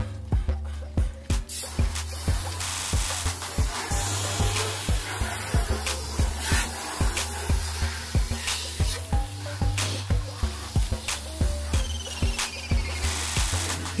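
Background music with a steady beat over the hiss of water from a garden-hose spray nozzle hitting a car, the spray starting about a second and a half in.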